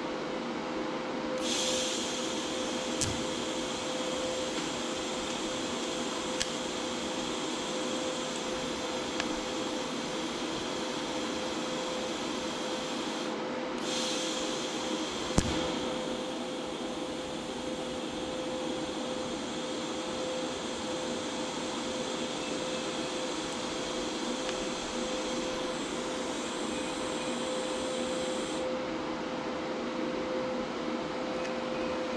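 TIG welding arc tacking a steel travel-limiter bracket: a steady hiss that runs for about twelve seconds, breaks off briefly, then runs for about fourteen seconds more. The welder is set at 80 amps, too low for the thick metal, so each burn is long before a puddle forms. A steady hum and a few light clicks run underneath.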